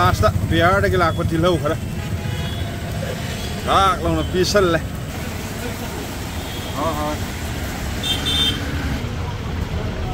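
A steady low engine rumble, like road traffic or an idling vehicle, under voices talking in short bursts.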